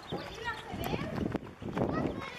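Indistinct chatter of several people talking, with a few sharp knocks.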